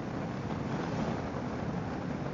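Steady wind rush on the microphone over a low rumble from a motorcycle cruising along the road.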